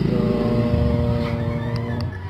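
Yamaha Mio i125 scooter's single-cylinder engine running at a steady pitch as the scooter rides away, the sound fading steadily.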